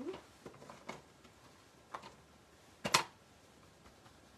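Handling of cardstock and craft supplies on a tabletop: a few light clicks and taps, then a sharp double click about three seconds in.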